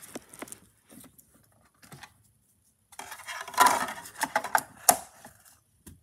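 Clicks and clattering of a DVD being handled and loaded into a DVD player: a few light clicks at first, a short pause, then a louder stretch of clatter about three seconds in that ends in a sharp click.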